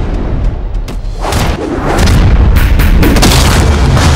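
Movie-trailer soundtrack: deep booming hits over music, growing louder from about halfway through.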